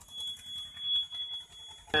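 A steady high-pitched tone, like a buzzer or whine, in the cab of a JCB 3DX backhoe loader, swelling and fading slightly, over a faint low engine rumble.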